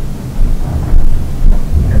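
Loud, low background rumble on the recording, wind-like noise on the microphone that surges a few times.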